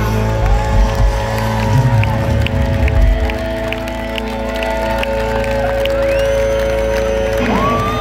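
Live concert music over a stadium PA, long held chords over a deep bass, with the crowd cheering and whooping. The bass drops away in the middle and comes back near the end.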